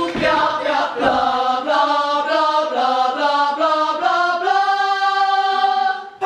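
Female vocal ensemble singing together in harmony, moving through chords and ending on a long held chord that cuts off right at the end. A couple of short knocks sound in the first second.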